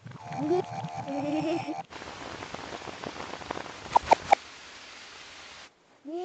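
Cartoon sound effect of steady falling rain, an even hiss that starts about two seconds in and stops just before the end, with three quick pitched blips about four seconds in. Before the rain, a brief stretch of voice with a few held tones.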